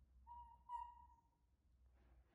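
Baby macaque giving two short, clear coo calls in quick succession, each holding one steady pitch, the second a little louder and longer; a contact call for its mother.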